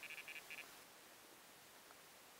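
Electronic carp bite alarm on the rod pod giving a quick run of four or five short beeps at one pitch, then stopping. The beeps signal a fish taking the bait.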